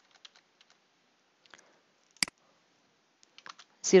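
A few scattered computer keyboard keystrokes, single taps with pauses between them and one sharper tap a little past the middle, as text is deleted and retyped in a code editor.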